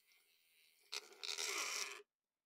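Handheld battery-powered paint mixer whisking thick paint in a small tin: a loud churning, gloopy noise starts about a second in and cuts off suddenly near the end as the mixer stops.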